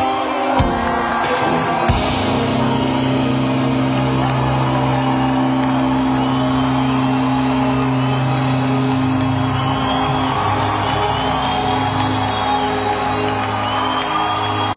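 Live band holding a long sustained chord, its low bass notes ringing steadily from about two seconds in and changing pitch about nine seconds in, with the crowd whooping and cheering over it.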